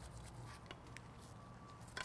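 Near silence: quiet room tone with a couple of faint small clicks, one early and one near the end.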